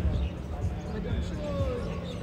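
Distant voices talking indistinctly over a low rumble.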